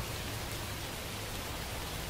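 Steady rain falling: an even, unbroken wash of rain noise, with no single drops standing out.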